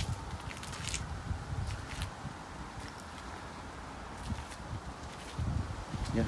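Footsteps as someone walks round a parked car, over a low rumble, with a sharp click at the start and another about a second in.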